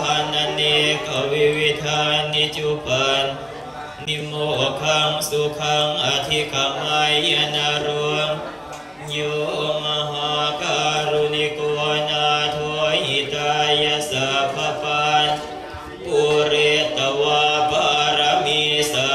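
Buddhist monks chanting Pali blessing verses in unison on a near-monotone, with short breaks for breath about four, nine and fifteen seconds in.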